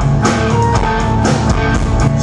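Live rock band playing an instrumental passage: electric guitar over a steady drum beat.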